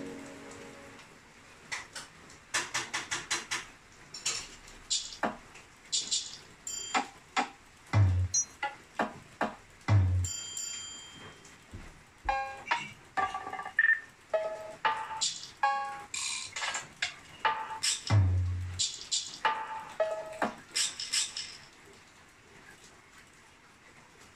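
Trap beat parts played back from FL Studio through speakers in short, broken bursts: quick hi-hat rolls, three deep 808 or kick hits, and short bell-like melody notes, as the beat is auditioned while it is being built.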